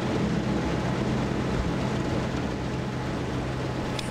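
Ferry engine running with a steady low hum under a constant rush of wind and water noise.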